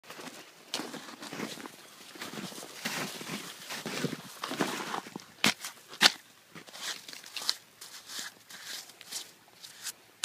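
Footsteps crunching in snow, about two a second, followed by snow crunching and scraping as a rifle is pulled out of a packed snowbank, with two sharp clicks about five and a half and six seconds in.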